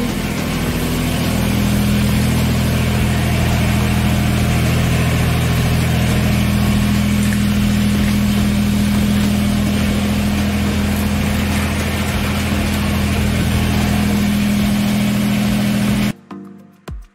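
Kubota BX23S compact tractor's three-cylinder diesel engine running steadily.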